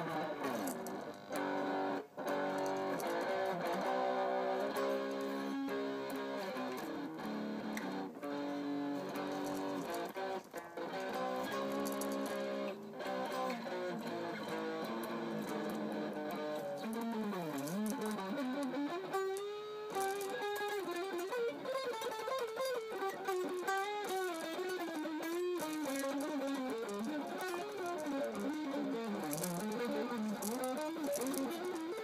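Electric guitar played fast, shred style: quick runs of notes, changing to a single-note lead line with wide bends and vibrato about halfway through.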